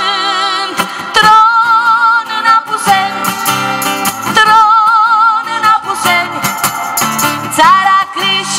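A woman singing long held notes with strong vibrato over a strummed acoustic guitar, live through a microphone.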